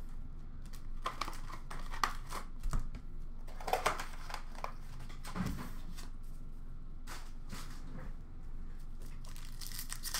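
Foil hockey card pack wrappers crinkling and tearing as packs are handled and ripped open, in irregular crackles, with a soft knock about five and a half seconds in.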